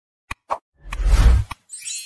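Sound effects for an animated subscribe button: two short clicks, then a swelling whoosh with a deep low thump about a second in, another click, and a bright shimmering sound near the end.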